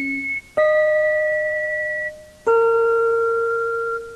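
Background music: a slow melody of single ringing notes, each struck and held for about two seconds as it fades. New notes start about half a second in and again about two and a half seconds in.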